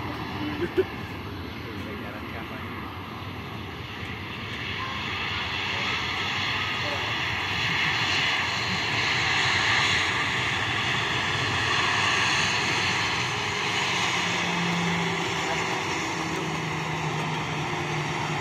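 Twin-engine jet airliner passing, its engine noise with a high whine swelling over the first several seconds, loudest around the middle, then easing slightly.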